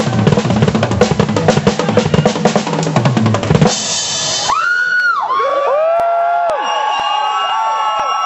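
A drum kit played fast, with bass drum and snare, which stops suddenly about three and a half seconds in with a short bright hiss. After it come long pitched tones that slide up and down.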